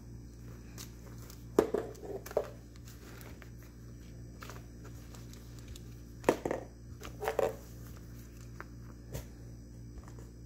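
Handling noises from a faux-leather cord-wrapped journal being unwrapped, opened and leafed through: two short bursts of rustling and rubbing, about a second and a half in and again around six seconds in, over a low steady hum.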